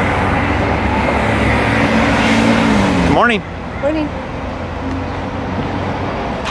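City street traffic: a car passes close, loud at first, its engine note falling as it goes by about three seconds in. Then quieter steady street noise with a brief voice sound.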